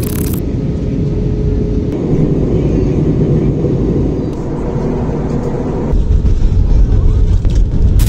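Jet airliner cabin noise heard from a window seat: a loud, steady low rumble of engines and rushing air that grows louder and deeper about six seconds in.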